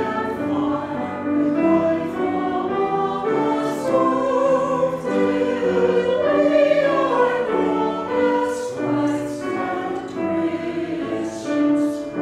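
Small mixed church choir singing a hymn in sustained chords, the notes changing about once a second, with the sung consonants standing out a few times.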